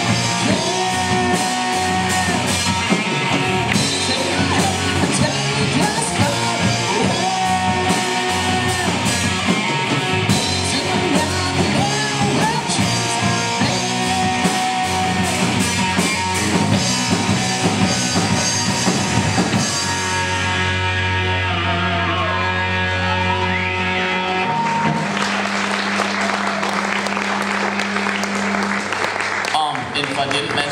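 A live three-piece rock band plays with a sung lead vocal: distorted electric guitar, electric bass and drum kit. About two-thirds of the way through, the drums stop and held guitar and bass notes ring out as the song comes to its end.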